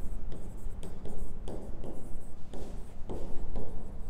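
A stylus writing on the screen of an interactive display board: a run of short strokes and taps as words are written by hand.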